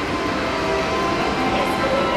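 Steady, loud indoor mall din, a continuous even noise with a few faint held tones and no clear voices standing out.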